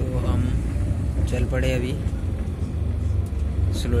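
Shuttle bus driving, its engine and road rumble heard from inside the cabin, with brief voices speaking over it.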